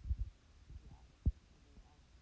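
A few dull, low knocks from a stylus on a writing tablet: a quick cluster of three right at the start, then one sharper single knock about a second and a quarter in.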